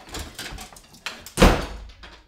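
A door banging shut with a single loud thud about one and a half seconds in, after a few lighter knocks.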